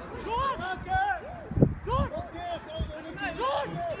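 Several voices shouting and calling out across a football pitch during play, with a few dull thumps, the loudest about a second and a half in.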